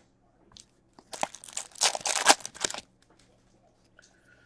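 Foil wrapper of a hockey card pack being torn open and crinkled. It is a crackly tearing sound lasting about a second and a half, beginning about a second in.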